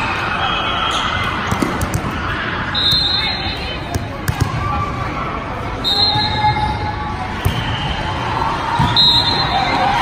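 Indoor volleyball gym: players and spectators talking in the background, thumps of a volleyball being bounced and hit, and three short high-pitched squeals about three seconds apart.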